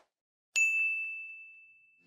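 A single bright chime, a 'ding' sound effect, struck about half a second in and ringing on one high note as it fades away slowly.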